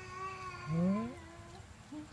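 A drawn-out animal call lasting about a second, with an upward swoop in pitch a little before the middle, its loudest part.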